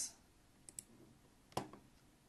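Computer mouse clicking: two faint light ticks just before a second in, then one sharper click about three quarters of the way through.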